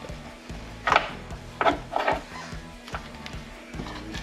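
A few sharp, irregular clicks and knocks of a wrench working a side-post battery terminal bolt, the loudest about a second in, over steady background music.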